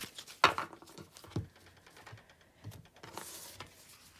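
A deck of round oracle cards being shuffled by hand: soft flicks and slides of card against card, with a sharper snap about half a second in and a brief rustle near the end.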